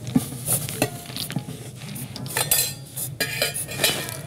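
Metal coins clinking and rattling irregularly as they are handled in a small metal tin, with a denser run of clinks in the second half.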